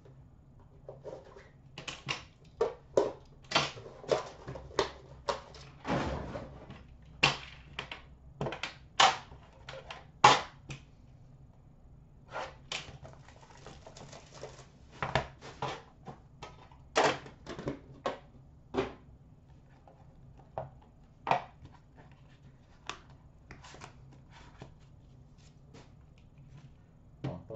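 Irregular clicks, taps and knocks as a metal tin box of trading cards is opened and its inner card box handled on a glass counter, with the loudest knock about ten seconds in.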